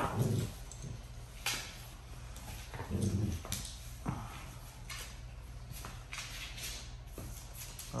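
Two Dogo Argentinos playing tug-of-war over a rope toy: a brief low vocal sound from a dog about three seconds in, with scattered short clicks and scuffs of the play on a tile floor.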